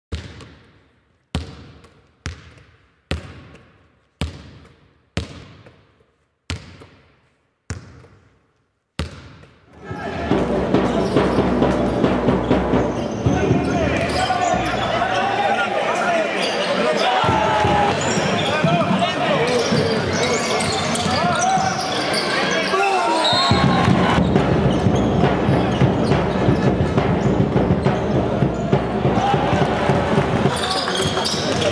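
A basketball bouncing about nine times on a hard floor, roughly once a second, each bounce ringing out in a large room. About ten seconds in this gives way to indoor basketball game sound: crowd voices, court noise and ball bounces in a gym.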